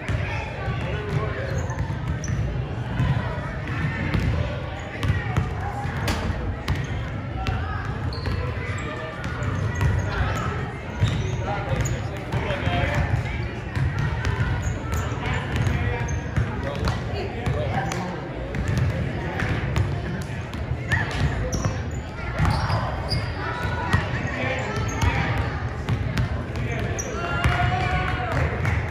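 Several basketballs bouncing on a hardwood gym floor during warm-ups: many irregular, overlapping thuds, echoing in the large gym, over indistinct chatter of voices.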